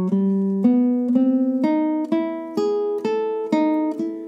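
Nylon-string classical guitar playing single plucked notes one after another, about two a second, climbing in pitch: a slow beginner's left-hand finger exercise, fretting note pairs with the third and fourth fingers string by string.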